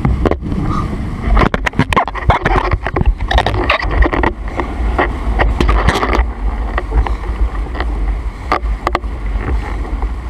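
Wind buffeting the camera microphone in a steady low rumble while a windsurf board planes over choppy water, with a dense run of sharp splashes and slaps of spray from about a second and a half in to about six seconds, and a few more near the end.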